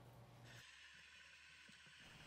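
Near silence: faint room tone with a low hum and hiss, the background changing abruptly about half a second in.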